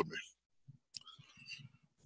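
A man's spoken word trailing off, then a pause of near silence broken by a few faint short clicks.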